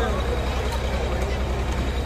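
A steady low mechanical drone, like a running engine, under faint background chatter.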